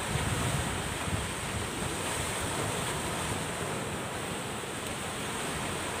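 Steady wash of sea surf mixed with wind noise on the microphone, even throughout with no distinct breaking waves.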